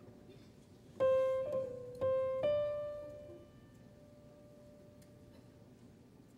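Piano playing three sparse single notes, struck about one second in, two seconds in and just after, each ringing out and fading away.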